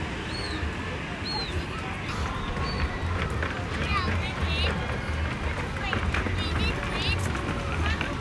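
Outdoor amusement-park ambience: a steady low rumble under distant voices. Two clusters of short, high, repeated calls come through, one about four seconds in and another a couple of seconds later.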